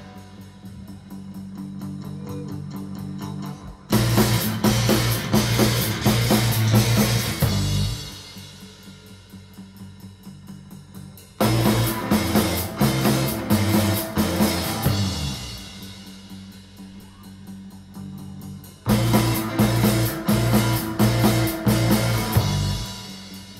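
A live rock band of electric guitar, electric bass and drum kit playing. It alternates quiet, sparse passages with loud full-band sections that come in suddenly about four seconds in, again near halfway, and again near the end.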